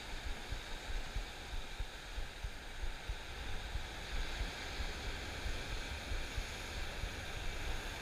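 Ocean surf breaking on rocks below: a steady rushing hiss with a low rumble that rises and falls unevenly.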